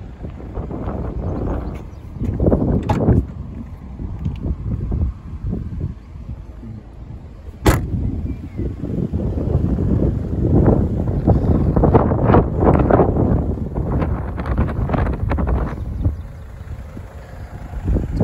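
Wind buffeting the microphone in uneven gusts, with one sharp click about eight seconds in.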